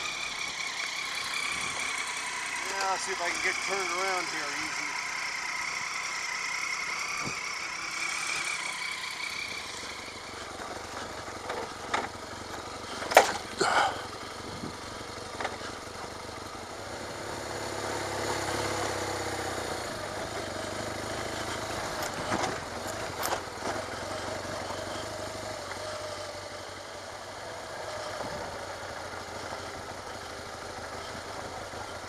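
Dual-sport motorcycle engine running while the bike rides slowly along a rough dirt two-track, with a few sharp knocks and rattles around the middle.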